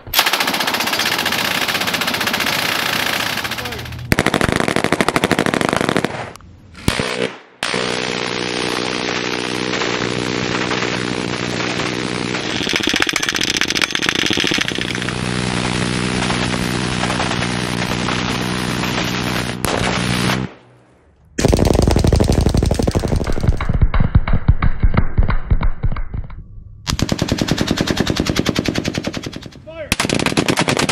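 Fully automatic machine-gun fire in long sustained bursts, broken by short gaps about a quarter of the way in, about two-thirds in, and near the end. Through the middle stretch the shots come so fast that they run together into a buzzing drone.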